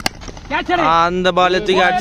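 A single sharp crack of a cricket bat hitting a tennis ball, then, from about half a second in, a man's long drawn-out shout held on one pitch as the ball is lofted high.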